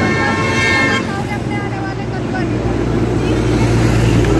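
A horn sounds one steady toot for about a second, then stops, leaving outdoor background noise with a low rumble that grows near the end.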